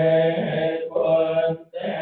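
A man's voice chanting Buddhist verses through a microphone, on long, held notes with a brief pause near the end. The sound is thin, with the high end cut off.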